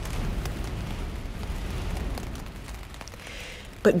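Steady outdoor rushing noise with a deep rumble, easing off a little about three seconds in.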